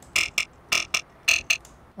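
Serum synth bass patch for Belgian jump-up drum and bass, distorted and run through a phaser whose frequency is being turned: short, growling, vowel-like stabs, about five in two seconds at uneven spacing.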